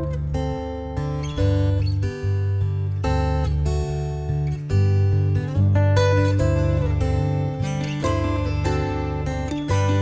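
Background music: a guitar-led tune with a steady bass line.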